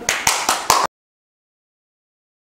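Four quick hand claps, about four a second, then the sound cuts off abruptly to complete silence just under a second in.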